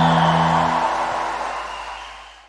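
The closing chord of a gospel song's recorded backing track: a held low note stops a little under a second in and the remaining wash of sound fades away.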